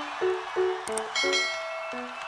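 Short channel intro jingle: a quick run of short pitched notes, with a bright bell-like chime coming in a little past halfway.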